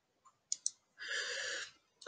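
Two quick clicks of a computer mouse, about a tenth of a second apart, followed by a soft hiss lasting under a second.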